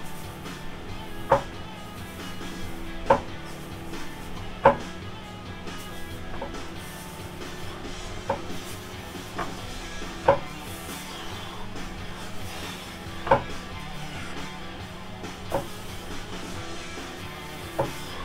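Background music, with about nine sharp knocks at uneven intervals, the first three about a second and a half apart. The knocks are a ceiling-mounted pull-up bar and its mount knocking under the load of bodyweight pull-ups.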